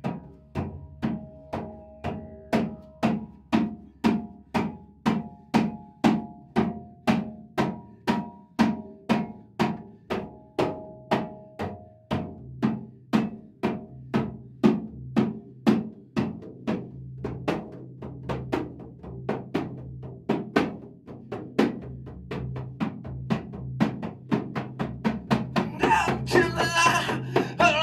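Hand-struck frame drums beating a steady, even pulse of about two strokes a second. A faint higher pitched line moves in steps over the first half, and a low sustained tone sits underneath from about halfway.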